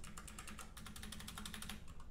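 Fast typing on a computer keyboard: a quick, even run of light keystrokes.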